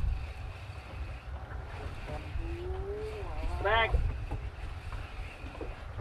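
Steady low rumble of wind and open water around a small fishing boat at sea, with one drawn-out voice call in the middle that rises into a short higher cry.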